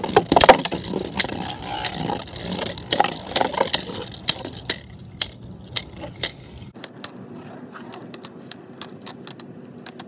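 Two plastic Beyblade Burst Rise spinning tops whirring and scraping across a plastic stadium floor, clashing with sharp clicks and rattles. The hits come thick and fast at first and grow sparser after about seven seconds.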